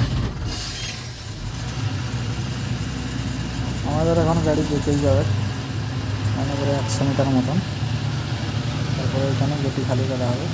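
Dumper truck's diesel engine running under way, heard from inside the cab, a steady low rumble that grows louder over the first two seconds as the truck drives on.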